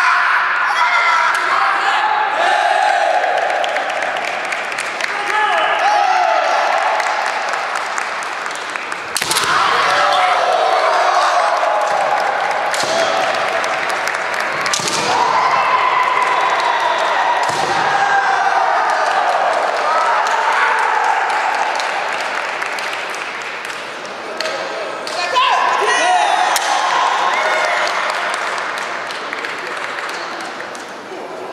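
Kendo fighters' kiai, long drawn-out shouted cries rising and falling almost without a break, echoing in a sports hall. A few sharp impacts of bamboo shinai strikes and stamping feet cut through about nine, fifteen and eighteen seconds in.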